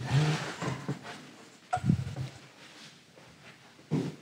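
Matted photographic prints and mount boards being slid and set down on a table, rustling, with a louder moment of handling about two seconds in and faint low voice sounds mixed in.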